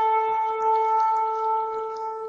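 A long, twisted shofar sounding one long held note, steady in pitch, slowly fading toward the end.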